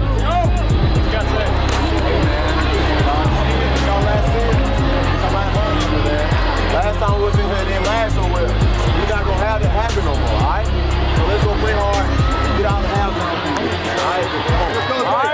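Background music with a heavy, steady bass line and vocals over it.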